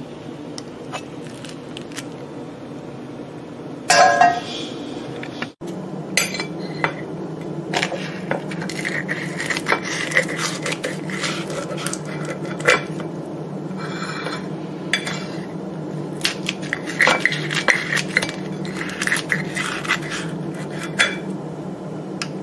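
Kitchen scissors snipping through a crispy tortilla pizza crust on a ceramic plate, many small clicks of the blades with scraping against the plate. About four seconds in, a sharp clink of the plate with a short ring; a steady low hum underlies everything.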